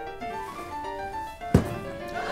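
Soft piano notes played quietly, then a single sharp thump about one and a half seconds in.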